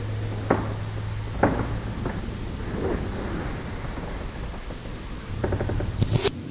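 Steady hiss with a low hum, broken by two faint clicks in the first two seconds and a short rattle of clicks near the end.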